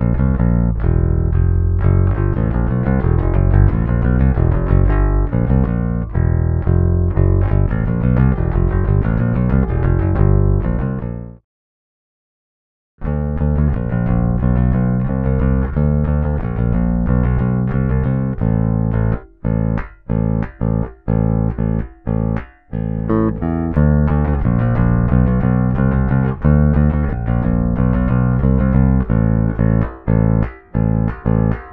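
Electric bass guitar played with metal picks, a continuous picked bass line. A shiny bronze pick is used first; after a brief silence about 12 s in, rough-surfaced aluminium and then copper picks take over, which add a scraping, crunchy edge to the attack of each note. Several short staccato breaks fall in the line after the switch.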